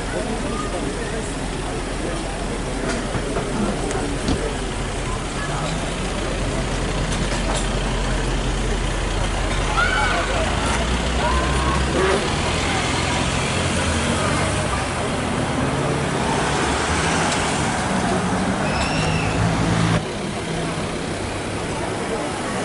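Ford Mustang's engine rumbling at low revs, then revving in rising and falling steps as the car pulls away and accelerates down the street. People's voices can be heard alongside. The sound cuts off suddenly about twenty seconds in.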